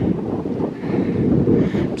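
Wind buffeting the microphone: a steady, loud, low rumble.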